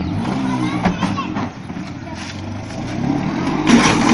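A motor scooter's small engine running, with people's voices over it. A loud, short clatter comes near the end as a scooter goes down over a concrete step.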